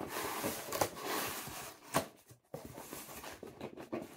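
A cardboard box being opened by hand: the cardboard rustles and scrapes as the flaps are pulled open, with two sharp snaps in the first two seconds, then quieter handling.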